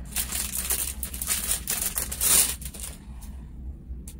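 Clear plastic wrapping crinkling and rustling as a wristwatch is pulled out of it, loudest a little over two seconds in, then dying down to a few faint rustles.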